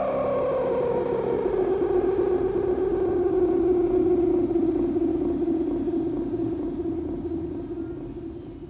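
Electric guitar signal through an Artec effect pedal, a sustained tone that slides down in pitch as the pedal's knob is turned, then settles into a steady low drone that fades near the end.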